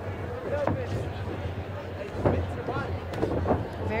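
Boxing bout in an arena: crowd voices and shouts over a steady low hum, with a few sharp thuds of gloved punches, the loudest about two seconds in.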